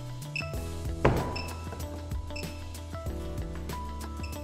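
Background music over which an InVue IR2 sounder key gives a short high chirp about once a second, its alert that a cabinet has been left unlocked. A single sharp knock about a second in.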